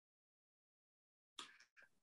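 Near silence, the call audio gated off, with a faint short sound about a second and a half in.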